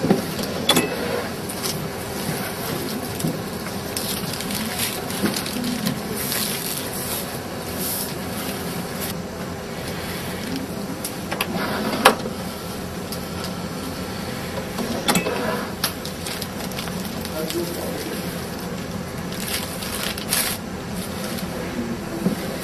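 Automated maki sushi rice-sheet machine working, with a steady mechanical running noise and scattered clicks. There is a single sharp click about twelve seconds in as its start button is pressed.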